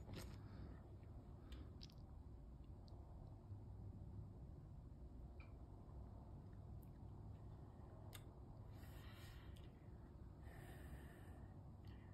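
Near silence: room tone with a few faint clicks and two soft hisses near the end.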